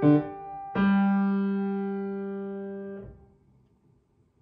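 Grand piano playing the closing chords of a short piece: a brief chord, then a final chord held for about two seconds and damped off.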